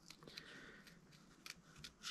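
Faint snips of small scissors fussy-cutting a stamped paper image, a few short clicks with the clearest about a second and a half in and just before the end.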